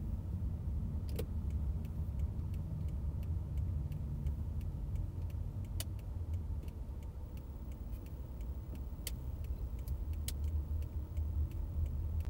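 Steady low rumble of a car driving slowly, with a few sharp clicks scattered through it.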